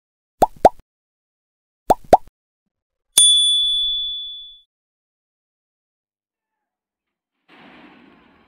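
Subscribe-button animation sound effects: two pairs of quick clicks in the first two seconds, then a single bright bell ding about three seconds in that rings out for about a second and a half.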